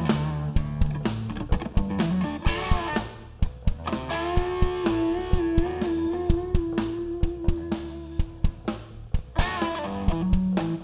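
Live rock band playing: electric guitar lead over bass and a steady drum beat. The guitar bends notes early on, then holds one long note with a slight vibrato from about four seconds in until near the end.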